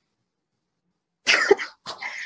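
About a second of dead silence, then a woman's short cough.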